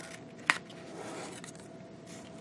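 Scissors cutting paper: one sharp snip about half a second in, then a softer, longer cutting stroke.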